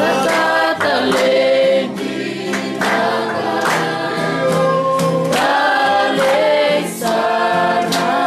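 A congregation singing a gospel worship song together in held, sustained notes, with hand claps on the beat about once a second.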